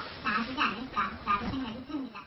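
Women's voices in conversation, speaking too indistinctly to make out the words.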